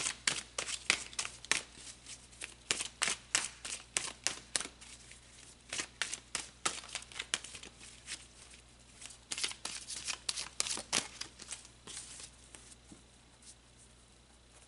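A tarot deck being shuffled by hand: a quick, irregular run of card clicks and slaps in clusters, thinning out about eleven seconds in.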